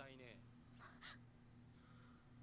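Near silence: a faint voice trails off at the start, then a brief breathy sound comes about a second in, over a steady low hum.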